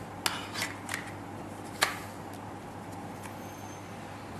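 A few small plastic clicks and taps from handling the Dovpo EZ-FONE, a vape mod built as an iPhone 5 case, as the phone is fitted into it. The sharpest click comes about two seconds in, over a low steady hum.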